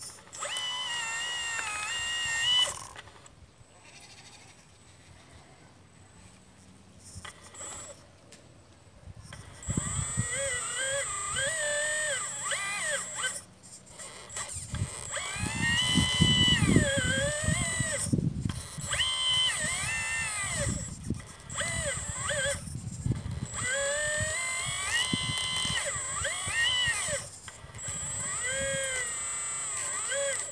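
Motors of a 1/12 scale RC Liebherr 954 excavator whining as the arm swings and digs, the pitch rising and falling with each movement. There is a short burst at the start, a quieter gap, then near-continuous whining from about ten seconds in, with a low rumble in the middle.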